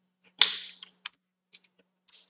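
Computer keys being pressed: one sharp clack about half a second in, then four lighter clicks, as the slides are advanced.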